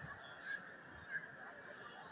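Faint open-air ambience with a few short, high calls standing out, about half a second in and again just past a second.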